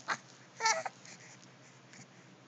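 A 13-week-old baby's short, high-pitched vocal sound, a little over half a second in, lasting about a third of a second.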